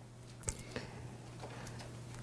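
Faint rustle of Bible pages being turned while the place in Jeremiah is found, with a light click about half a second in, over a steady low electrical hum.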